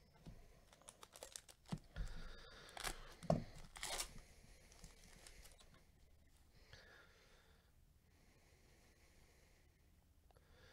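Gloved hands handling stiff trading cards and foil pack wrappers: a quick run of crackling, scraping rustles over the first four seconds, loudest about three to four seconds in, then a faint rustle and quiet.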